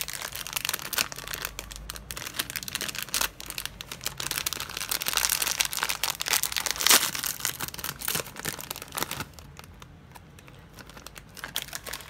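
Foil snack pouch crinkling and tearing as hands pull its crimped seal apart. A dense run of crackles, loudest about seven seconds in, gives way to softer rustling near the end.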